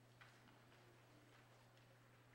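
Near silence: room tone with a steady low hum and a few faint, irregularly spaced ticks.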